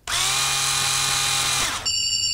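Electronic whirring sound effect for a robot's structural scan: a steady buzzing whir that winds down in pitch about 1.7 seconds in. Near the end it gives way to a high, steady electronic tone.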